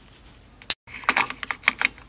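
Polished rhodonite heart stones clicking against each other and against other tumbled stones as they are set into a basket: a single click, then a quick run of clicks about a second in.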